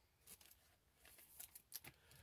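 Near silence with a few faint clicks of a stack of baseball trading cards being flipped through by hand, a couple of them close together near the end.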